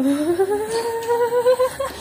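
A woman's voice holding one long drawn-out hum or vowel that rises steadily in pitch for almost two seconds, then breaks off.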